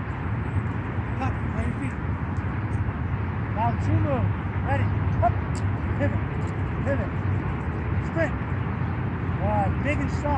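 Outdoor field ambience: a steady low rumble with many short rising-and-falling chirps or calls scattered through it.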